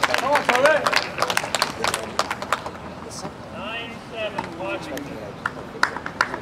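A small group of spectators clapping, with voices calling out. The clapping dies away about two and a half seconds in, leaving a few scattered voices.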